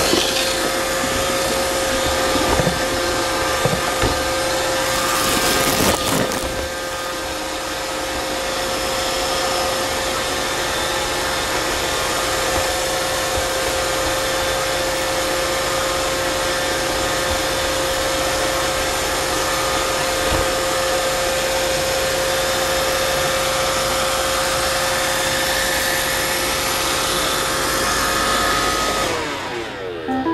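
iRobot Roomba 530 robot vacuum running: a steady motor and brush noise with a constant whine, broken by a few knocks, mostly in the first several seconds. The running stops about a second before the end.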